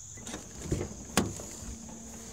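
Quiet handling noise with one sharp click a little past a second in, then a faint steady low hum.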